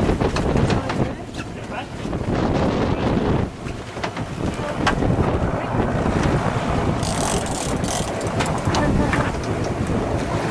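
Wind buffeting the microphone over a running boat engine, with water splashing and sloshing against the hull; the splashing grows brighter and hissier about seven seconds in.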